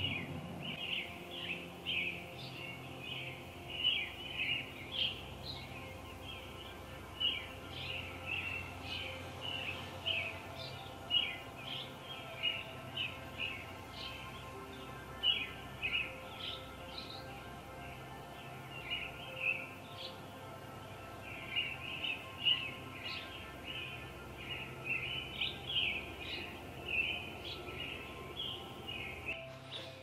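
Birds chirping in many quick, short calls, one after another, over soft sustained background music.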